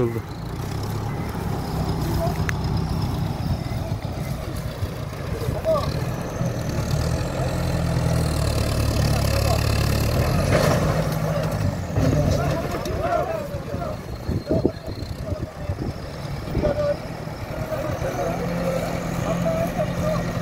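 Diesel engine of a farm tractor with a front loader running steadily, working harder and louder for a few seconds near the middle as it is used to right an overturned truck.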